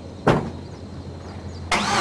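Exhaust of a 2005 GMC Canyon's 2.8L four-cylinder through a 40 Series Flowmaster muffler on stock piping, at a steady low hum. A sharp click comes about a third of a second in, and near the end the exhaust suddenly gets much louder.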